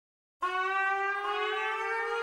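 A shofar (ram's-horn trumpet) sounding one long blast that begins about half a second in, its pitch rising slightly as it is held.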